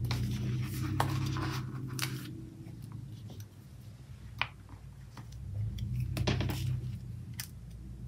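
Hands handling paper sticker sheets and pressing a sticker onto a planner page: short rustles, scratches and small sharp clicks, with a low hum underneath that swells near the start and again about six seconds in.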